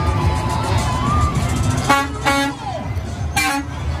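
Semi truck's air horn sounding short blasts, a pair about two seconds in and another near the end, over crowd noise and music.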